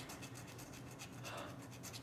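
Scratching the coating off a paper scratch-off lottery ticket: a quick, faint run of short scraping strokes.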